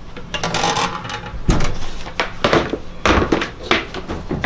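Peach and persimmon smoking wood chips being dropped into the lump charcoal fire of a Big Green Egg ceramic kamado grill: a short rustle, then a series of sharp knocks and clatters from about halfway through.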